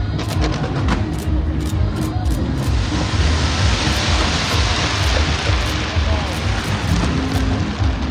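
A large fireworks display heard close up: a dense, continuous rumble of booming shells with sharp bangs scattered through it. A thick wash of crackling swells up about three seconds in and fades a little before the end.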